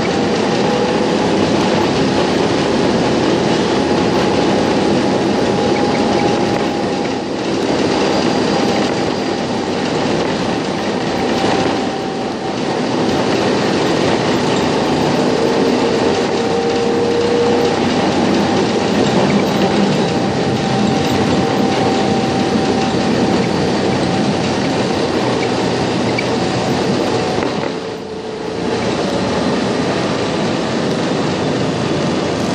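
Budapest line 2 tram running, heard from inside the car: a steady rumble of wheels on rail with thin, steady wheel squeal tones. A stronger, lower squeal comes in for a couple of seconds past the middle, and the noise drops briefly near the end.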